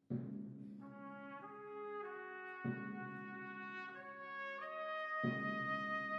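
A trumpet ensemble begins a slow, solemn funeral piece: a low sustained chord sounds, higher trumpet parts enter one after another above it, and the chord is struck anew twice, about two and a half seconds apart.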